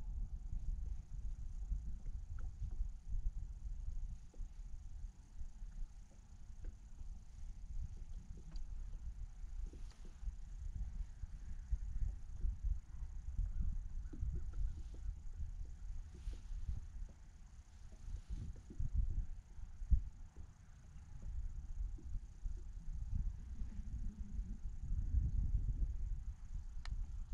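Wind buffeting the microphone as a low, uneven rumble, with scattered faint clicks and one sharper knock about three quarters of the way through.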